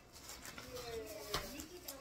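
Dog giving a faint, drawn-out whine that slides in pitch, with a single small knock about halfway through.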